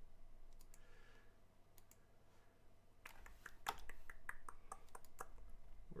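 Light clicking at a computer: a few scattered faint clicks, then a quick run of about ten sharper clicks about halfway through.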